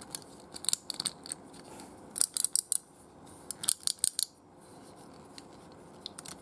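Rapid clicks and clacks of a die-cast metal and plastic collectible figure's parts and joints being worked by hand. They come in three short clusters, about half a second, two seconds and three and a half seconds in.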